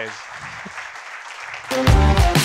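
Audience applauding. About 1.7 seconds in, loud music with a strong beat starts up and drowns it out.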